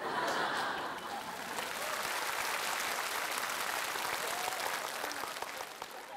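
Studio audience applauding, with some laughter mixed in. The applause breaks out suddenly, holds steady, and eases off near the end.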